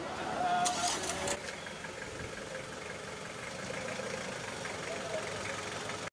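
Mitsubishi ambulance van's engine running at low speed as it moves off, with people's voices nearby and a short burst of noise about a second in.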